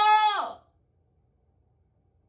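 A dog's single drawn-out, high whining call, ending about half a second in.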